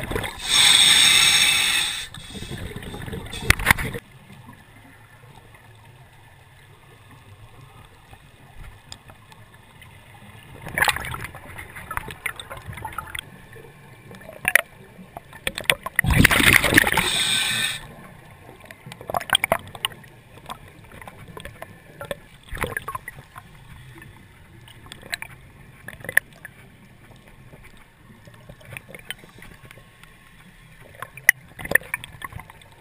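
Underwater recording of a scuba diver's exhaled bubbles from the regulator, coming in gurgling bursts. The biggest bursts come about a second in and just past halfway, with a smaller one before that. Between them runs a faint crackle of small clicks.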